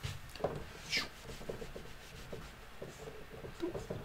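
Dry-erase whiteboard eraser rubbing across the whiteboard, wiping off marker writing in a series of short, faint strokes, with a brief breathy "shoo" about a second in.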